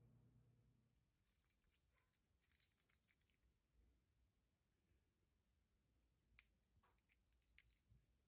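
Near silence, broken by faint light clicks and rattles: one cluster starting about a second in and another near the end, from hard-bodied crankbaits and their treble hooks being handled.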